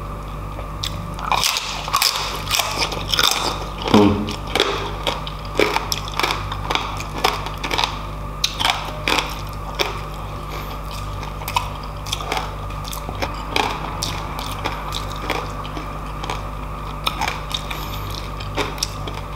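Close-miked eating: biting and crunching crispy roast pork (lechon) skin, then chewing rice and meat eaten by hand, a run of irregular crunches and mouth clicks with the loudest crunch about four seconds in.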